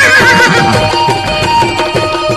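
A horse whinnying, a wavering call that falls away in the first half second, over loud folk music with drumming.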